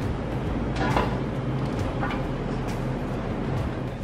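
Steady low hum of a commercial kitchen's ventilation and equipment, with a few light knocks of a knife on a cutting board as raw beef is sliced.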